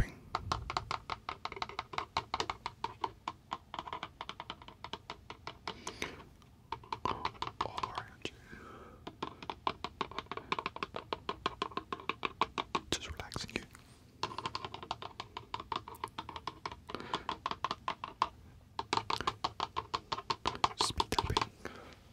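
Rapid fingertip speed tapping close to the microphone, in runs of a few seconds broken by short pauses.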